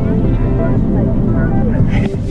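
Steady cabin rumble of a passenger van driving, under background music and voices.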